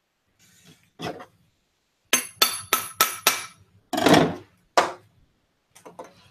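A run of five quick, ringing metallic clinks, about three a second, followed by two duller knocks, as metal items are handled on a table.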